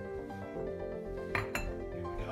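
Two sharp glass clinks close together about a second and a half in, as glass bottles are moved and knock together, over steady background music.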